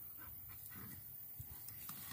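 A Thai Ridgeback dog panting faintly as it noses through undergrowth after a snake, with a few small rustles of leaves.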